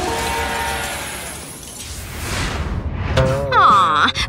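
Cartoon transition sound effect over background music: a shattering crash at the start that fades out, then a whoosh about two seconds in. A voice comes in near the end.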